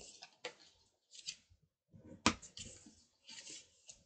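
Thick white cardstock being folded and pressed flat along its scored creases by hand and bone folder: rustling and scraping of the card with a few sharp taps, the loudest a little past halfway.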